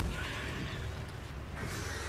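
Animated sea serpent's screeching cry from the cartoon soundtrack, heard twice, once at the start and again near the end, over a steady low rumble.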